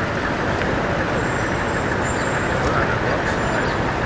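Steady city street traffic noise, an even rumble and hiss, with faint voices mixed in.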